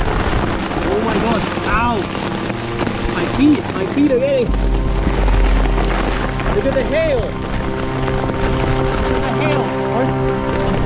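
Hail and rain pelting down hard on a gravel river bank and tent, with a low gust of wind on the microphone about halfway through. Background music with sustained tones plays over it.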